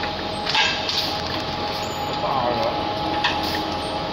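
PET can filling and sealing machine running: a steady mechanical hum and hiss, with irregular sharp clicks and knocks as cans move through the star wheels.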